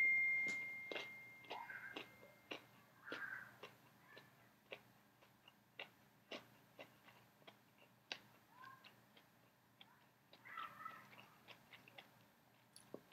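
A phone's notification chime rings out and dies away in the first second or two, followed by faint, irregular clicks and soft crunches of someone chewing a crispy breaded chicken tender.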